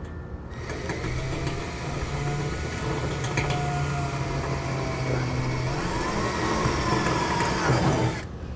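Handheld power drill running with a short bit, drilling a pilot hole up through the underside of the pickup's bed to mark a hole centre. The motor starts about half a second in, runs steadily under load, and winds down just before the end.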